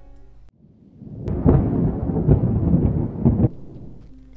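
A deep rumbling sound effect that starts with a sharp crack about a second in, stays loud for about two seconds, then dies away near the end. Sustained music fades out just before it.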